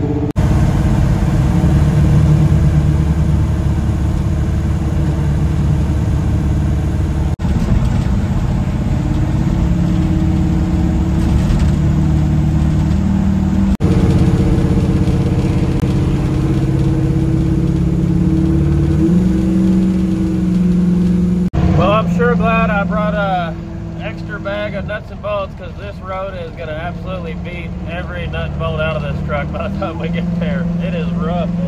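Old Chevy C10 pickup's engine and road noise inside the cab while cruising on the interstate, in pieces joined by sudden cuts, with the engine note rising briefly about two-thirds through. After the last cut the drone is quieter and a voice talks over it.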